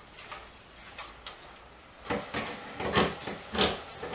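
A utensil stirring and scraping ground turkey as it browns in a stainless steel pot, with a light sizzle. It is quiet with faint clicks at first, then about half-way through comes a run of short scraping strokes.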